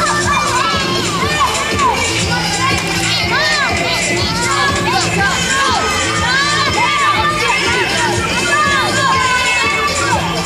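A group of young children shouting and cheering together, many overlapping excited yells, with music playing steadily underneath.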